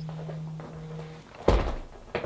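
A steady low hum, then a single dull thunk about one and a half seconds in.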